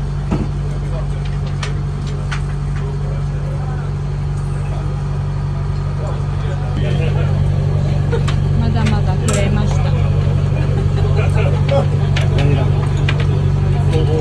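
A tour boat's engine runs with a steady low hum in the dining cabin. There is faint chatter and an occasional small click over it.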